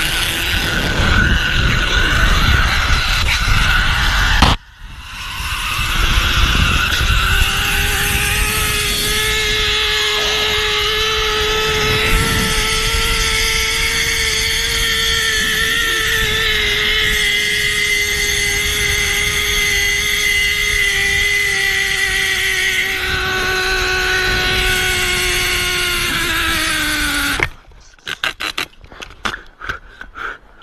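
Zip-line trolley pulleys running along a twisted steel cable: a steady whine with several tones over a rush of wind. Near the end the whine sags slightly in pitch as the ride slows, then cuts off suddenly, followed by a few metallic clicks of the trolley and carabiner.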